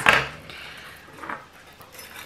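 Small objects handled on a tabletop: a sharp knock at the start, then light handling noise and a faint click about a second in, as batteries are fitted into the battery box of a string of fairy lights.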